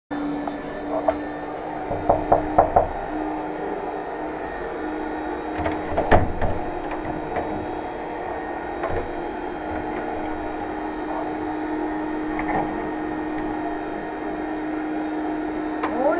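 Knocks on a hotel room door: a quick run of four raps about two seconds in, then another sharp knock around six seconds in, over a steady low hum.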